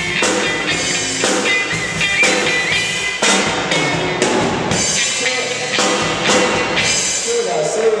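Live rock band playing: drum kit beating a steady rhythm under electric guitars. A sung voice comes in near the end.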